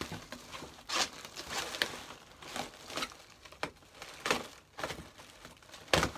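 Packing paper and wrapping in a cardboard box crinkling and rustling in irregular bursts as it is handled and pulled about.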